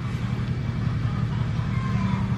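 A steady low drone of a running motor, with a constant low hum.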